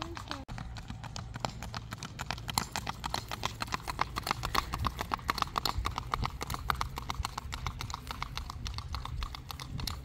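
Horse's hooves on asphalt road, ridden in a smooth gait: a rapid, even clip-clop of hoofbeats.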